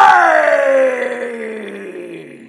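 A man's loud, drawn-out excited yell at a big card pull, starting suddenly and sliding slowly down in pitch as it fades.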